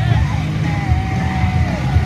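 Two dirt bike engines running at low revs as the riders hold the bikes almost still, mixed with music from a sound system.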